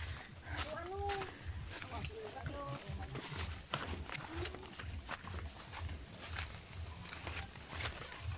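Leaves and branches rustling and crackling as someone walks through dense brush, with foliage brushing against the microphone, and a few short wordless vocal sounds in the first half.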